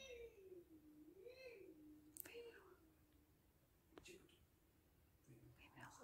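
Near silence: room tone, with a faint wavering pitched sound in the first couple of seconds and two soft clicks, about two and four seconds in.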